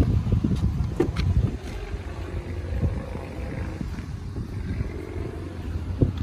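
Wind rumbling on the microphone, with a few sharp clicks about a second in as the driver's door latch of a 2018 Chevy Tahoe is pulled and the door swings open.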